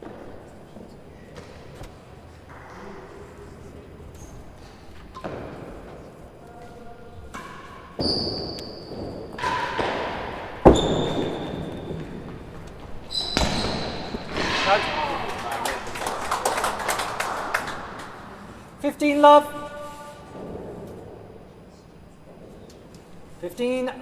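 A real tennis rally in a large walled indoor court: a series of sharp knocks as the heavy ball is struck by rackets and hits the walls and sloping penthouse roofs, some knocks followed by a short ringing tone. The loudest knock comes about ten and a half seconds in.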